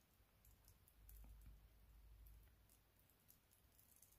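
Near silence with faint, scattered light clicks as nail transfer foil is gently rubbed down onto a still-tacky gel nail.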